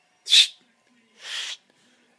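A man's breathy sounds: a short, sharp puff of breath about a third of a second in, then a softer, longer breath about a second later.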